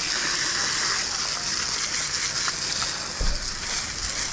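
A garden hose's spray nozzle running a steady jet of water onto gravel, washing down a dog run. A brief low bump comes about three seconds in.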